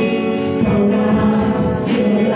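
Live church worship band playing: voices singing held notes into microphones over electric guitar and bass guitar.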